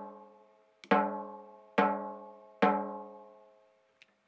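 Snare drum head tapped three times with a drumstick next to one tension rod. Each stroke rings out with a clear, steady pitch and dies away over about a second. The snare wires are off and the top head is tuned very tight; the strokes are being measured by a clip-on drum tuner to even out the tension at each lug.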